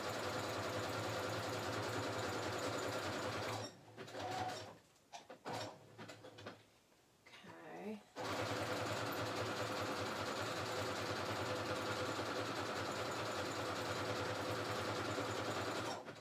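Electric sewing machine stitching a decorative stitch through paper, running steadily, stopping about three and a half seconds in for roughly four seconds, then running steadily again.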